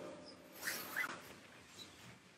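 A quiet room with two faint, short squeaks about two-thirds of a second and one second in.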